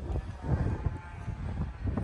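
Uneven low rumble of wind buffeting the microphone, with no engine or pump tone.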